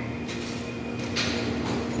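An ATM cash dispenser counting and pushing out banknotes: a brief mechanical whirr about a second in, over a steady low hum.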